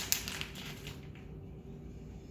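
Crinkling of a plastic bag of shredded mozzarella as cheese is pinched out of it, with a few sharp crackles mostly in the first second.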